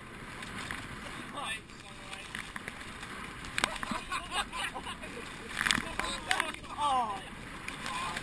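Oars of a coastal rowing boat splashing through choppy water, with a burst roughly every two seconds as the blades strike on each stroke, over a steady rush of water. A voice calls out about two-thirds of the way through.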